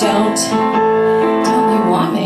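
A woman singing a cabaret song into a microphone, accompanied by piano, holding sustained notes.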